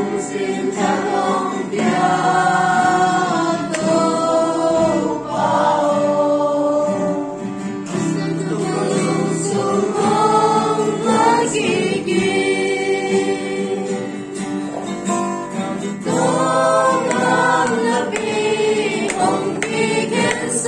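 A small group of mixed men's and women's voices singing a worship song together, accompanied by an acoustic guitar.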